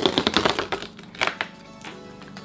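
Perforated cardboard pull tab on a toy box being torn open: a quick run of small tearing clicks in the first half-second, then a few separate crackles of the cardboard.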